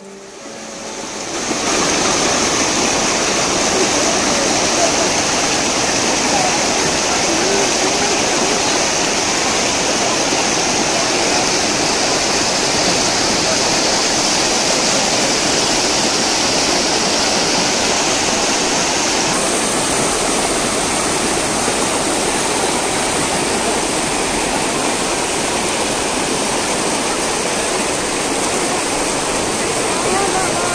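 Shallow river rushing over rocks: a loud, steady wash of flowing water that fades in over the first second or two, its tone shifting slightly about two-thirds of the way through.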